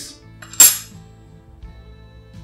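Soft background music, with a single sharp, bright click about half a second in.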